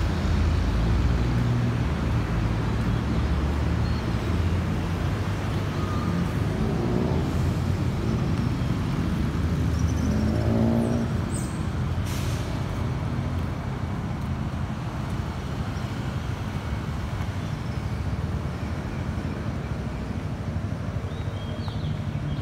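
Steady city road traffic: a continuous rumble of vehicle engines and tyres, with a short high hiss about halfway through.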